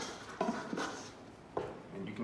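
Rye dough being tipped out of a stainless steel mixing bowl onto a floured wooden counter: a few soft knocks and bumps of the bowl as it is turned over.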